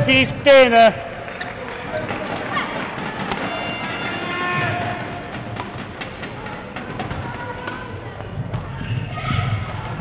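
Badminton rally in a large hall: sharp racket strikes on the shuttlecock at irregular intervals, with players' footfalls thudding on the court floor.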